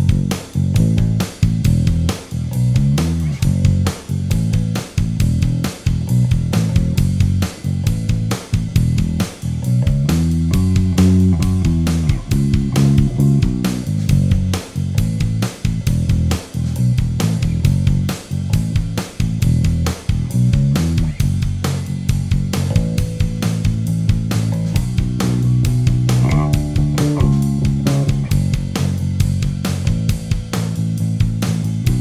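Fender Deluxe Active Precision Bass, its P and J pickups both on and its electronics set to passive, played clean through a small Phil Jones combo amp with flat settings. A solo bass line of plucked low notes in a steady rhythm, climbing into higher melodic runs in places.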